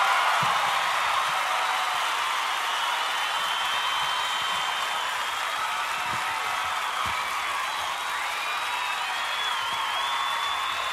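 Crowd cheering and applauding, with whoops and a few whistles, steady throughout.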